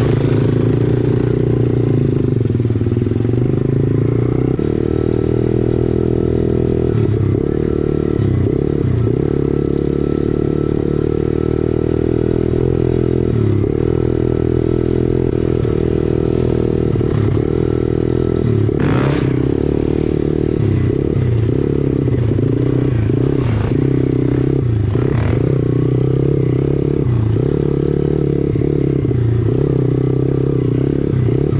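Dirt bike engine running under way on a rutted dirt track, its note dipping briefly again and again as the throttle is rolled off and on, with rattles from the bike over the ruts.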